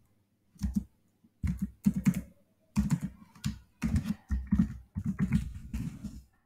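Typing on a computer keyboard: bursts of quick keystrokes separated by short pauses.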